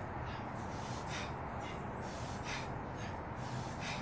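A man's heavy breathing from the exertion of a long set of pull-ups: short sharp breaths, about one every second, over a steady low hum.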